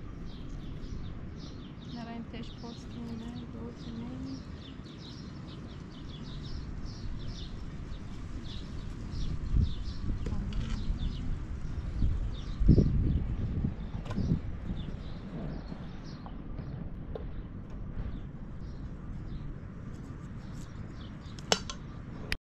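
Small birds chirping again and again in short high notes over a steady low rumble of outdoor air, with a few dull thumps about halfway through.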